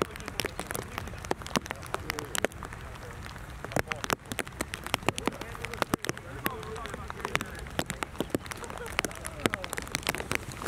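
Raindrops hitting the plastic sheet wrapped over the camera, heard as many sharp, irregular taps over a steady hiss of rain.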